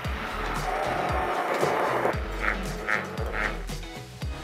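Handheld immersion blender running in a bowl of cream, sugar and vanilla, whipping it into whipped cream. Its motor-and-churning noise is loud for about two seconds, then stops.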